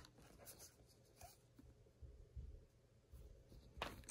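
Near silence with faint rubbing and a few soft taps from small makeup items being handled.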